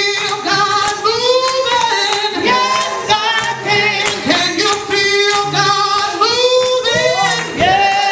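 Women singing a gospel song into microphones, several voices with strong vibrato.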